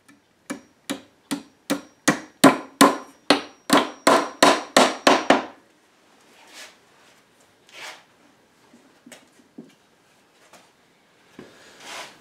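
A rapid run of about fourteen sharp knocks, about three a second, quickening and getting louder over some five seconds, then stopping. A few soft rustles and light knocks follow as a cloth cover is pulled off the workbench.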